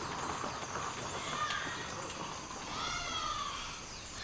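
A horse neighing twice: a short call about a second in, then a longer one that rises and falls near the three-second mark.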